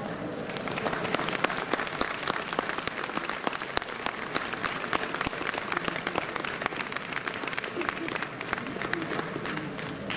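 Audience applauding, a dense patter of many hands clapping that begins about half a second in and keeps up steadily.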